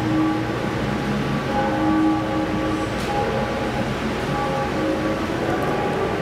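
Slow ambient music of held tones that change pitch every second or so, over a steady hiss.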